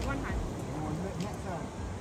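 Faint, indistinct voices in short bursts, over a low rumble of wind and sea.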